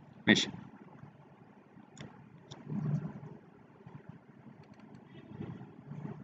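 Quiet room noise with a single short spoken syllable at the start. About two seconds in there are two faint computer mouse clicks, half a second apart, followed by a brief low murmur.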